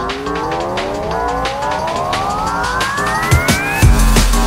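Electronic background music with a riser: a synth tone sweeps steadily upward in pitch over a pulsing beat, building up. Just before the end the beat drops into heavy bass and kick drums.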